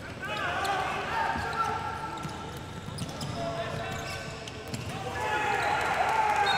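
Live indoor handball play: sneakers squeaking on the wooden court, the ball bouncing, and players calling out.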